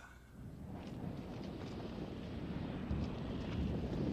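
Low rumbling, wind-like noise that grows steadily louder.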